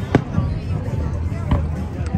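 Fireworks exploding overhead: two sharp bangs, one just after the start and another about a second and a half later.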